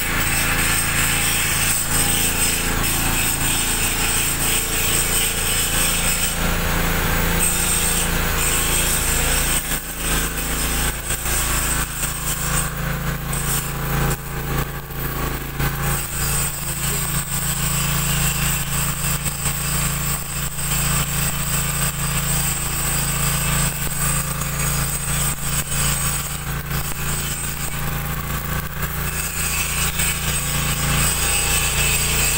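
Electric arc welding of a threaded steel socket onto a steel pipe, the arc running continuously over a steady low machine hum and a high steady whine.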